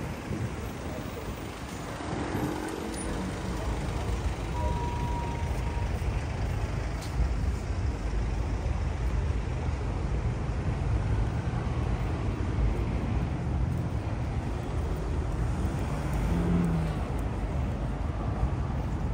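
Road traffic on a busy city street: the steady low rumble of passing cars, vans and lorries, with a brief high steady tone about five seconds in.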